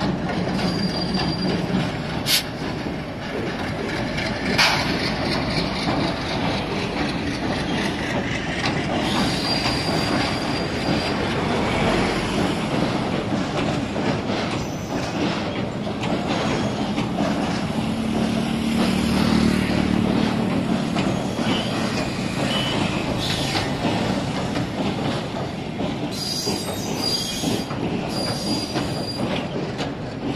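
Passenger train running steadily over a rail bridge, with wheels clacking on the rails and brief high-pitched wheel squeals now and then, near the start, around ten seconds in and again near the end. Two sharp clicks come a few seconds in.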